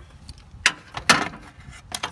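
Metal hand tools clinking: a ratchet, extension and spark plug socket being handled in the plug well, with three sharp clinks over about a second and a half.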